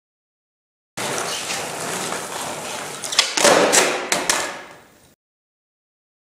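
Skateboard wheels rolling on hard ground, then several sharp clacks and knocks of the board hitting the ground about three to four seconds in, which are the loudest part before the sound fades. The sound cuts in and off abruptly.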